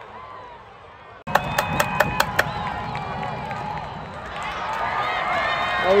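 Thin ballpark crowd murmur with distant voices. After an abrupt cut about a second in come a few sharp hand claps, and the crowd noise swells toward the end.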